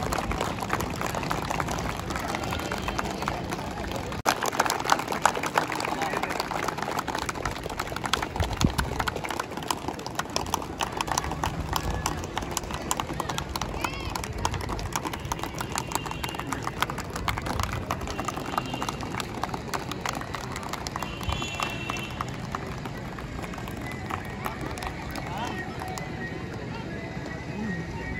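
A small crowd clapping in uneven applause that swells about four seconds in and thins toward the end, with voices chattering underneath.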